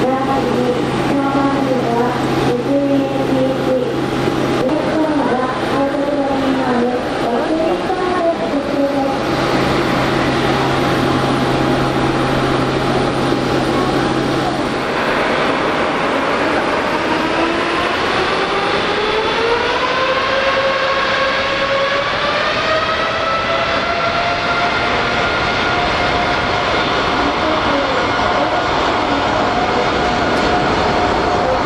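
Boeing 747-8F's four GE GEnx-2B67 turbofans running, then spooling up for takeoff. About halfway through, a whine rises steadily in pitch for several seconds before levelling off to a high steady thrust tone.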